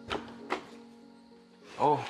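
Two knocks on a wooden bedroom door, about half a second apart, over soft background music.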